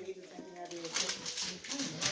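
Faint, low voices in the room, with light handling noises.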